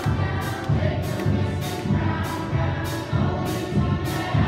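Student string orchestra of violins, cellos and double basses playing a piece with a steady pulsing beat in the low strings, a little under two beats a second.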